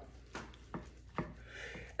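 Long breaking knife pushed down through a raw beef strip loin in short strokes, with three faint clicks.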